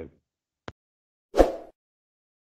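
Sound effects of an animated subscribe-button graphic: a faint click, then a moment later a louder, short pop.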